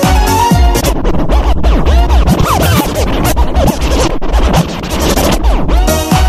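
Electronic dance music with a heavy bass beat and a passage of turntable scratching: quick back-and-forth pitch sweeps from about a second in until just before the end, when the melody returns.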